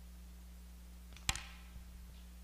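A single sharp tap or click, with a small follow-up tick just after, over a steady low electrical hum.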